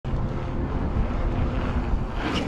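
Wind rumbling on a bike-mounted action camera's microphone while a mountain bike rolls over stone paving, a steady low rumble with no sharp knocks.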